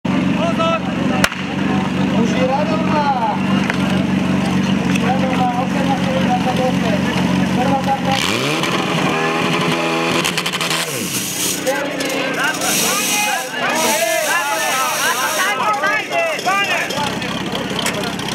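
Portable fire pump engine running steadily, with a single sharp crack about a second in. About eight seconds in the engine revs up in a rising sweep as the pump is put to work, then settles. From midway, spectators shout and cheer over the engine.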